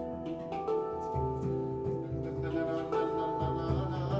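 Handpan played live: struck, pitched notes ringing on and overlapping, with deep low notes sounding under them about a second in and near the end.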